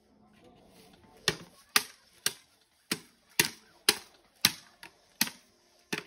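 Empty plastic water bottle crackling as a toddler squeezes and handles it: about ten sharp, separate pops, roughly two a second, starting a little over a second in.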